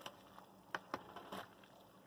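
Wooden spoon stirring noodles and vegetables in a large metal pot: four or five faint, short clicks of the spoon and food against the pot in the first second and a half, then near quiet.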